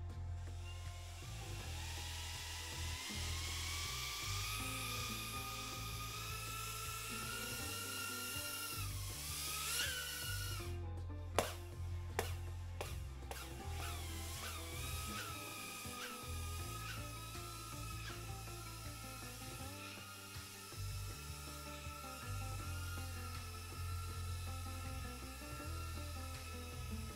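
Small cinewhoop drone's motors and ducted propellers whining, the pitch climbing over the first ten seconds as it lifts off, then holding a steady high whine with small wavers as it flies away. A few sharp clicks come about eleven to thirteen seconds in, over background music with a bass beat.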